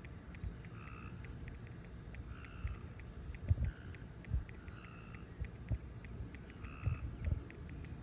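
Outdoor ambience: small birds calling in short, repeated high notes, over irregular low thumps and rumble on the microphone.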